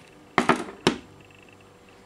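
A smartphone being set down on a wooden tabletop: three sharp knocks with a short clatter within about half a second, a little before the one-second mark.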